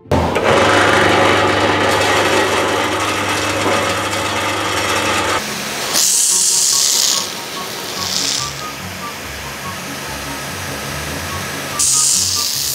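ANOVI 30S high-pressure washer, its 3 kW electric motor and pump starting abruptly and running with a steady hum under the loud hiss of the water jet. The hum drops away about five seconds in; after that the jet comes as separate hissing bursts, around six seconds and again around eight seconds.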